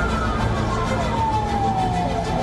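Emergency vehicle siren wailing in one long, slow downward glide of pitch, over a dense low rumble.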